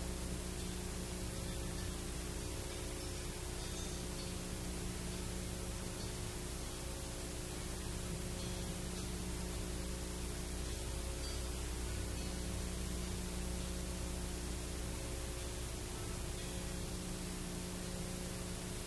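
Steady hiss with a constant low mains hum and a few faint steady hum tones above it: the background noise of an old analogue video recording and its sound system, with no playing.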